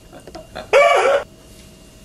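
A man's short, high-pitched yelp, about half a second long, a little past half a second in, with a few faint clicks before it.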